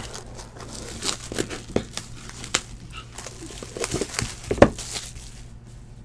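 Clear plastic shrink wrap crinkling and tearing as it is pulled off a trading-card box: a run of irregular crackles, with one sharper snap about four and a half seconds in.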